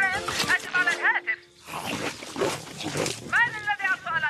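High-pitched cartoon creature vocalizing in short wordless calls that swoop up and down in pitch, the Marsupilami's chatter. A noisy rustling stretch sits in the middle, and the calls return near the end.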